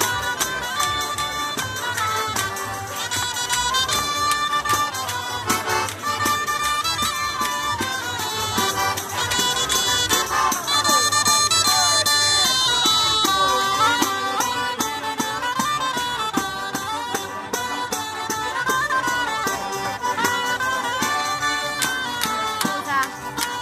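Live folk dance music on an organetto (diatonic button accordion) with a small reed wind instrument playing the melody over a steady, fast rhythmic beat.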